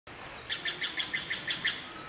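A bird chirping: a quick run of short, evenly repeated high notes, about six or seven a second, starting about half a second in and stopping shortly before the end.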